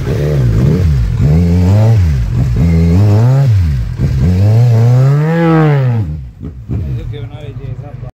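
Kawasaki Z1000 inline-four motorcycle engine being revved in about four throttle blips, its pitch climbing and falling back each time. About six seconds in it drops back toward an uneven idle.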